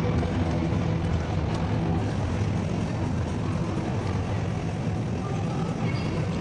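A steady low background rumble with faint tones above it, with no speech.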